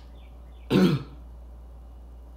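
A man clearing his throat once, briefly, about three quarters of a second in, over a steady low hum.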